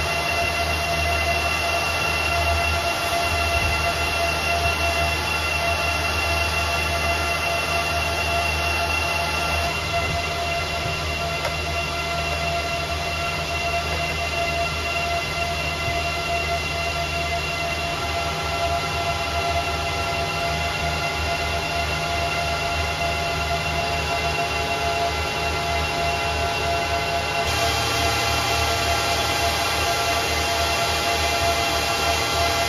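Cooling fans of several Bitmain Antminer ASIC mining rigs running together: a steady, loud whir with a few high, steady whines in it. The mix of whines shifts a little about ten seconds in and again near the end.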